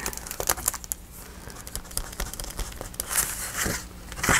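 Sheets of paper rustling and crinkling as a cut piece of patterned paper is handled and lifted from the page, with small taps and clicks; a louder rustle comes about three seconds in.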